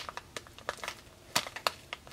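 Clear plastic pouch of bath soak crinkling as it is handled, a scatter of quiet crackles with two sharper ones in the second half.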